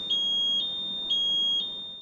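HAMILTON-T1 ventilator alarm: short high beeps about twice a second over a steady high continuous tone, the continuous-tone buzzer that joins an alarm left unsilenced through its first minute. The sound fades near the end.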